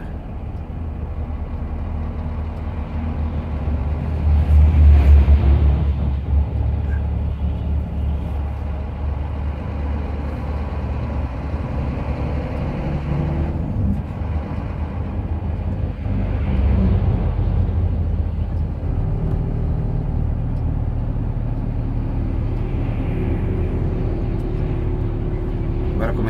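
Heavy truck's diesel engine heard from inside the cab, a steady low drone as the truck rolls slowly down a mountain grade in traffic. It swells loudest a few seconds in, and its note shifts several times later on.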